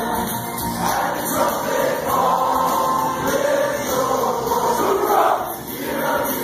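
A large group of men singing a worship song together over accompanying music, with a short drop in level near the end.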